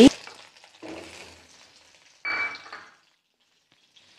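Ghee spooned into a hot metal kadhai and sizzling as it starts to melt. A sharp metal clink of the spoon on the pan comes at the start, and a short scraping ring follows about two seconds in.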